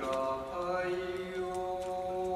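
Kagura song: a male voice chanting long, steady held notes, the pitch shifting only slightly between notes.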